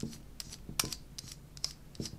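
A few separate small clicks and scrapes of a precision screwdriver working the grub screw in the back of a guitar pedal's plastic control knob.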